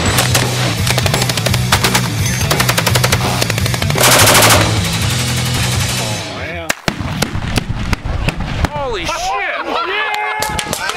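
Intro sting of heavy rock music laid under rapid machine-gun fire, with a loud explosion about four seconds in. The music cuts off near seven seconds, leaving single gunshot cracks and ricochet-like whines.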